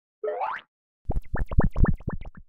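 Logo sound effect: a short rising glide, then a quick run of bubbly plops that fade away.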